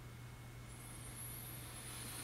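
Quiet room tone: a steady low hum under faint hiss, with a faint high whine that comes in under a second in.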